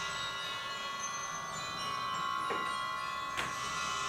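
A steady, high electrical whine with a buzzing edge, made of many fixed tones, with two faint clicks about a second apart in the second half.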